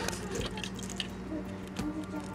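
A kitten batting at a toy mouse hanging on a string in a wire cage, giving a few light, irregular taps and clicks.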